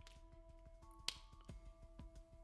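Quiet background music of soft held notes, with a single sharp click about a second in.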